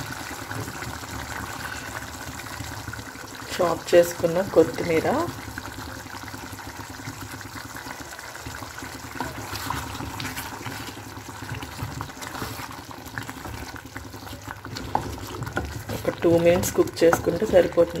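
Chicken curry gravy simmering in a kadai: a steady bubbling hiss with a few small pops.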